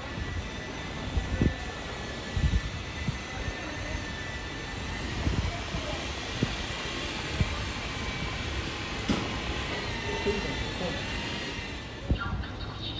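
Outdoor city ambience: a steady, even hum of distant urban noise that swells through the middle, with scattered low thumps.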